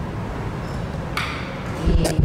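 Steady low hum and hiss through a microphone sound system in a meeting room. There is a short burst of noise about a second in and a low thump on the microphone near the end.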